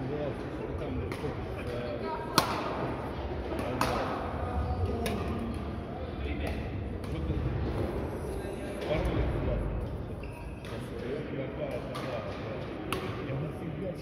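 Badminton rackets striking shuttlecocks in rallies across several courts: sharp pops about every second or so, the loudest a couple of seconds in, each ringing briefly in the large hall.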